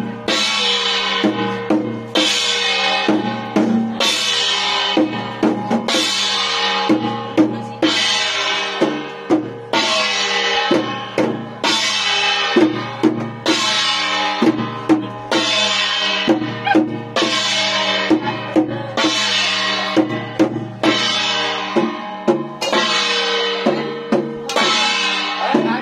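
Chinese temple ritual percussion: a red barrel drum beaten in a steady rhythm with cymbals clashed about once a second, each clash ringing on.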